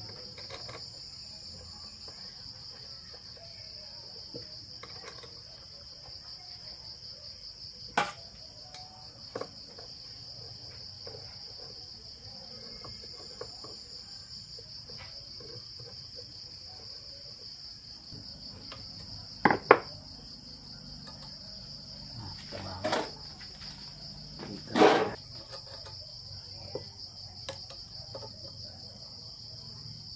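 Crickets chirping steadily in a continuous high trill, with a few sharp clicks and knocks of metal parts being handled on a workbench, the loudest about 20 and 25 seconds in.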